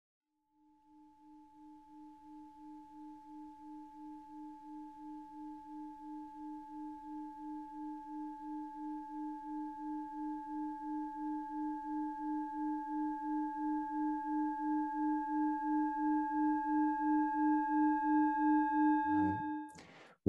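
Singing bowl sounding one sustained tone with higher overtones and a steady pulsing wobble, two or three beats a second. It grows gradually louder, then cuts off near the end.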